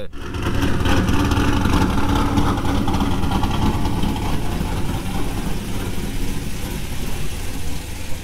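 A vehicle engine idling with a steady low rumble.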